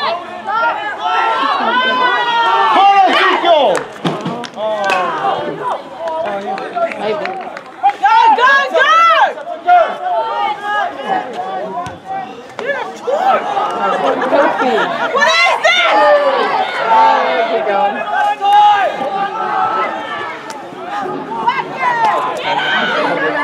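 Several voices shouting and calling out over one another, sideline spectators and players during a rugby match, with no clear words standing out.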